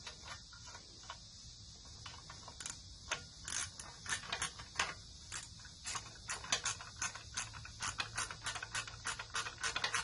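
Hand socket ratchet clicking as a fastener on a mower engine is worked, the clicks sparse at first and then coming in quick close runs from about six seconds in, over a steady hiss.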